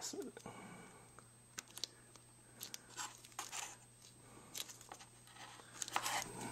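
Faint, scattered crinkling and rustling of gloved hands kneading and pinching a small lump of two-part epoxy putty, in short separate bursts over a faint steady hum.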